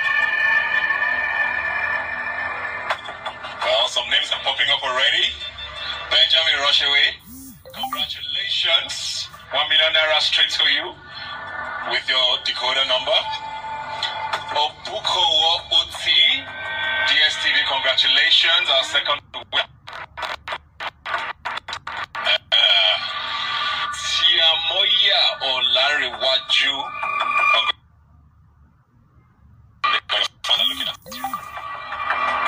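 Broadcast music with voices, played back through a live stream with a boxed, radio-like sound. For a few seconds past the middle it gives way to a run of sharp clicks, about three a second. Near the end it drops to a low level.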